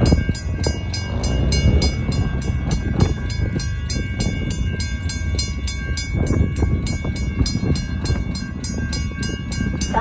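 Railroad grade-crossing bell dinging in a rapid, even rhythm, the crossing signals warning of an approaching train, over a heavy low rumble of wind buffeting the microphone.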